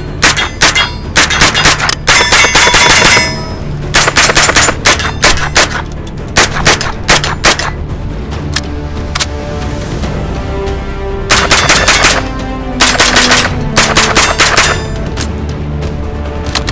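Century Arms AP5, a semi-automatic 9mm MP5 clone, firing several strings of rapid shots with short gaps between them, over background music.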